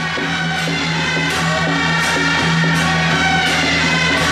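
Temple procession music: a stepping melody over a steady low held tone, with a cymbal-like crash about every three-quarters of a second.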